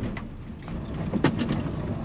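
Van driving slowly over a potholed gravel track, heard inside the cab: a steady low rumble of tyres and suspension, broken by short knocks and rattles from the jolts. The loudest knock comes a little over a second in.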